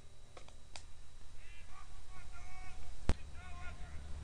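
A single sharp impact of a baseball about three seconds in, such as a pitch popping into a glove or off a bat. Distant players call out across the field before and after it.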